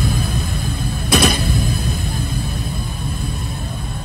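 A loud, deep rumble with a hiss above it that starts suddenly, surges again about a second in, then slowly fades.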